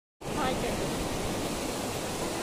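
Steady rush of sea surf breaking on a beach, starting a moment in, with a faint voice briefly near the start.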